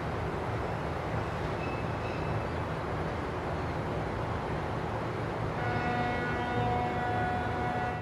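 Steady rushing of water flooding into a dry dock. About five and a half seconds in, a held chord of steady tones comes in over it.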